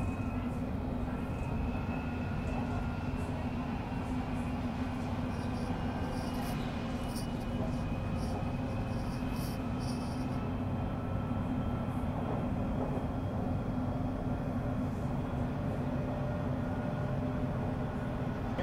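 Inside a London Underground Metropolitan line S8 stock carriage running at speed: a steady rumble of wheels on rail with a constant low hum and faint steady motor whine. A few short high clicks or rattles come about five to ten seconds in.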